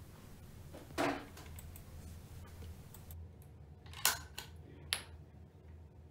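A few sharp clicks over a low hum: the loudest about a second in, two more at about four and five seconds. Among them is the ceiling pull-cord isolator switch clicking as its cord is pulled to cut the power to the electric shower.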